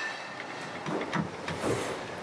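Ceiling fan motor parts clinking and rattling as the aluminium housing is pressed onto the stator and spun by hand on its bearing, a few knocks in the second half over steady workshop noise.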